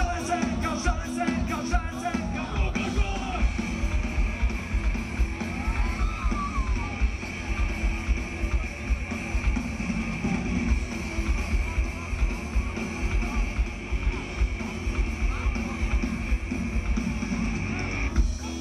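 Live rock band playing through a loud PA, heard from the audience: drums and bass with guitars, and a voice singing in the first few seconds.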